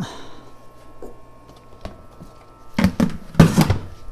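Quiet room with a few faint clicks, then two loud bursts of knocking and rustling about three seconds in, from handling close to the microphone.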